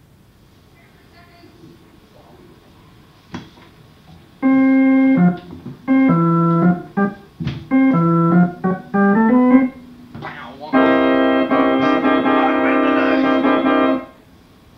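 An organ, after a few quiet seconds, playing a run of short, separated notes and chords in a stop-start riff, then holding one full chord for the last few seconds until it cuts off suddenly.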